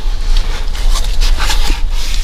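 Plastic under-dash trim panel rubbing and scraping as it is worked out from under the glove box, over a steady low hum.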